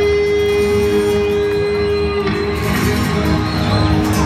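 Rock band playing live through an arena PA, electric guitars leading an instrumental passage. A long held guitar note gives way about two seconds in.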